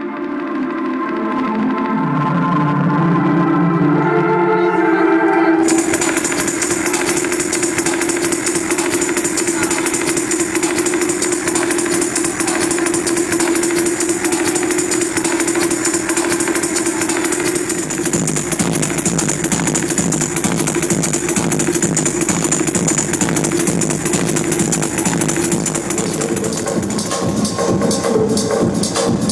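Live electronic music over a club sound system: sustained synth chords swell in, then about six seconds in a dense, fast, hissing percussion pattern starts over a held tone. A pulsing lower part joins about two-thirds of the way through.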